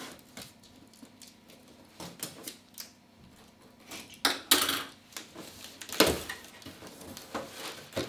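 Scissors snipping and sliding through packing tape on a small cardboard box, in scattered clicks, with a louder scrape of tape and cardboard about four seconds in and a thump about six seconds in.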